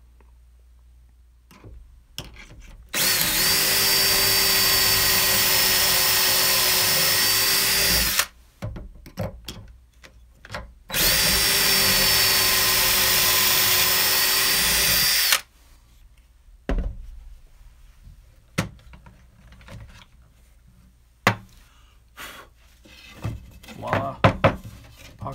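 Cordless drill with a stepped pocket-hole bit boring two pocket holes through a jig into a wooden board: two steady runs of about five and four seconds with a short pause between, each rising slightly in pitch as it spins up. A few knocks and clicks follow as the drill and board are handled.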